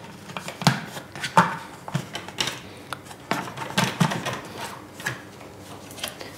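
Scattered clicks and knocks of a glass blender jug holding whole roasted almonds as it is handled and its lid is fitted.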